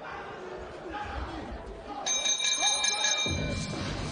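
Boxing ring bell ringing with rapid repeated strikes for about a second and a half, starting about two seconds in, signalling the end of the round. Crowd noise swells near the end.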